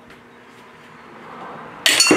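Tile nippers snapping a piece off a porcelain tile: a faint build for about a second, then one sharp crack with a brief high ringing near the end.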